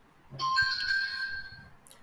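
Electronic notification chime: a bright ringing tone made of several steady pitches at once, starting about a third of a second in and fading out over about a second and a half. A short click follows near the end.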